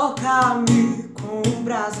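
A woman singing a worship song in Portuguese, accompanying herself on a strummed acoustic guitar; her sung notes glide and hold over regular strum strokes.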